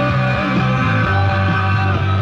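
A rock band playing live, with guitar and bass guitar, in an audience-side concert recording.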